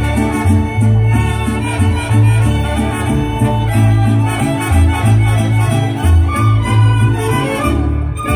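Mariachi band playing live through outdoor PA loudspeakers: violins carry the melody over strummed guitar chords and a bouncing bass line in a steady rhythm.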